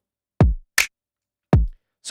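Mixed drum track playing back alone through the UAD Empirical Labs Distressor compressor plugin, set to its aggressive distortion mode. A kick with a pitch that drops is followed by a bright snare just under a second in, then another kick.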